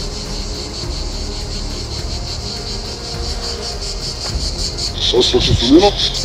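Cicadas calling in a steady, high, rapidly pulsing buzz, with a low rumble underneath.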